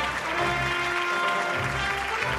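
Studio audience applauding over background music with a steady beat.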